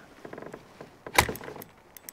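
Spinning reel clicking in a quick run as the line is worked against a snagged lure, then one loud, sharp knock a little over a second in.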